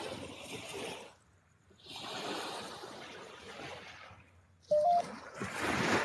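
Sea waves washing onto a sandy beach: a soft rushing hiss that drops out twice. About five seconds in comes a short, louder pitched sound.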